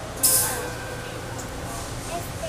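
A subway car's pneumatic system gives a sudden sharp hiss of released air about a quarter second in, fading over about half a second, over the car's steady low hum.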